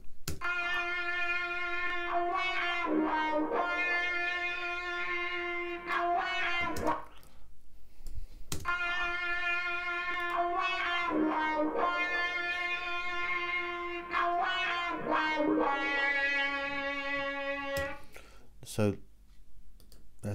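Electric guitar solo with distortion, wah and echo effects, playing back from a mix. It plays sustained, bending lead notes in two long phrases, with a short break about seven seconds in, and stops about two seconds before the end.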